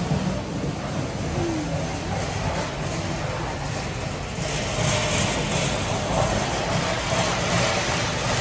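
Large-store background noise, with the rumble of a flatbed cart's casters rolling over a concrete floor, growing louder from about halfway through as it comes closer.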